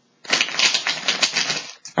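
A deck of oracle cards being shuffled by hand: a fast run of crisp card flicks lasting about a second and a half.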